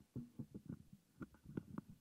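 Microphone on a stand being handled and adjusted, picked up as a quick run of soft, irregular low thumps with a few sharper knocks.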